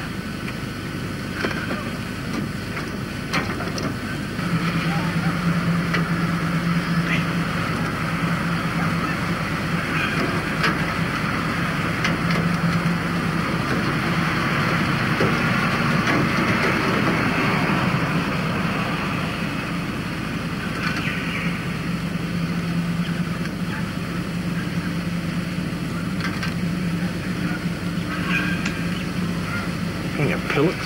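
A motor vehicle engine idling in the background, a steady low hum. It sets in about four seconds in, drops away in the middle and returns later.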